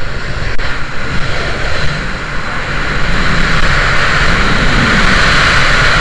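Freefall wind rushing hard over the camera's microphone, a loud steady roar that dips slightly and then grows louder over the last few seconds as the skydiver gains speed.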